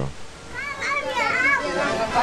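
Children's voices chattering and calling out in a crowd, high-pitched and rising and falling, starting about half a second in.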